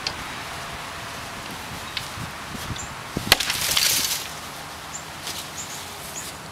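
A war club strikes a pumpkin once, sharply and loudly, a little over three seconds in, followed by about a second of splintering, scattering noise as it breaks apart. A few faint knocks come before the blow.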